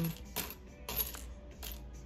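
Small metal charms clinking against one another and the resin tray as tweezers sift through the pile, a few light clinks spread apart.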